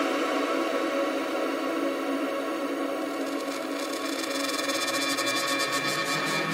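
Breakdown in a melodic techno track: sustained synth chords with no kick drum or bass. From about halfway through, a roll builds up, its hits coming faster and faster.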